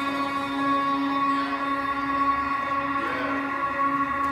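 Instrumental music between sung lines: steady held chords with no voice.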